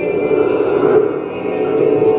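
A small band playing: electric guitar and a hand shaker under a sustained lead melody.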